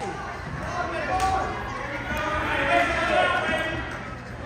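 Voices of spectators and coaches calling out, echoing in a gymnasium, with a sharp thump about a second in and a fainter one about a second later.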